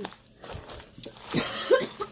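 A woman coughing a few short times in the second half, struggling for breath; she says she can't breathe and feels as if she is being choked.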